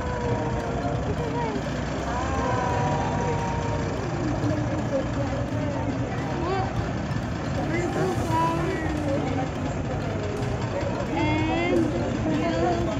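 Engine of an open-sided bus float running steadily as it drives slowly past close by, with people's voices over it.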